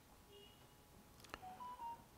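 Faint short electronic beeps at several different pitches: one near the start, a sharp click a little past the middle, then three quick beeps in a row. These are typical of a phaco machine's feedback tones while its irrigation/aspiration probe washes viscoelastic out of the eye.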